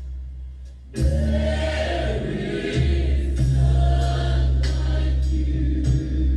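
Gospel music: a choir singing over a band with a heavy bass line. After a brief drop in the first second, the full band and choir come back in sharply about a second in.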